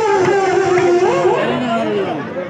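Women singing a kirtan through a microphone. One long note is held through the first half, then the line breaks into shorter phrases from several voices.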